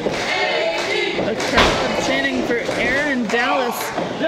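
Crowd voices shouting and chanting in a large hall, with one loud thud on the wrestling ring's canvas about a second and a half in.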